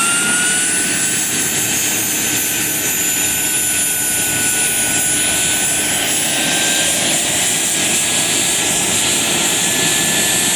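Radio-controlled model helicopter running with its main rotor spinning, a loud steady whine over a rushing noise. Its high tones rise in pitch up to about half a second in, then hold level.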